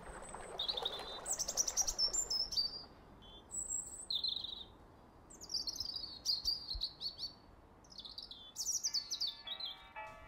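Birds singing: several separate phrases of high chirps and short descending trills, with pauses of about a second between them. Faint sustained music tones come in near the end.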